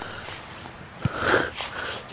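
A single dull thump about a second in, a boot kicking a football for goal, followed by a short breathy rush of noise.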